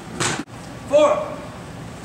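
A brief rushing noise that cuts off suddenly, then a single short shouted call about a second in.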